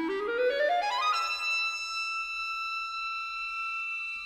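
Solo clarinet playing a fast rising run of small steps, reaching a high note about a second in and holding it steadily.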